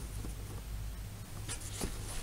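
Nylon paracord rubbing and sliding against itself as hands work a knot: faint scratchy rustles, with a couple of sharper scratches about a second and a half in, over a low steady hum.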